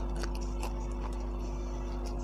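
Close-up crunching and chewing of a raw green chili pepper: crisp bites and mouth clicks mostly in the first second, then quieter chewing, over a steady low hum.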